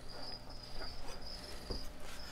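Cricket chirping in a steady run of high, even pulses, with a couple of faint taps.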